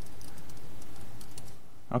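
Light typing on a laptop keyboard, a few soft keystrokes over a steady background hiss, as a terminal command is typed out and entered.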